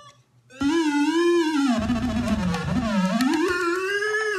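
Electronic synthesizer tone played down a phone line: one long wavering note, starting about half a second in, that slides down in pitch and climbs back up.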